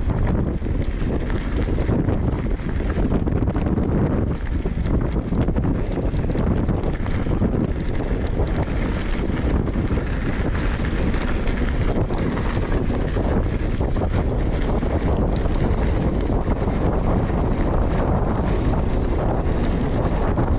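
Wind buffeting an action camera's microphone as a Pace RC295 mountain bike rolls down a dirt singletrack, with tyre noise on the grit and small rattles and clicks from the bike throughout.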